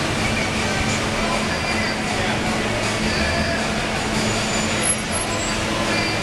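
Steady outdoor street ambience: a dense, even noise of traffic with a steady low hum underneath and a few faint high chirps.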